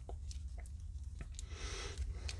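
Faint handling noise from a plastic He-Man action figure: a few light, scattered clicks and rubbing as its small plastic power sword is worked into the figure's hand, over a low steady hum.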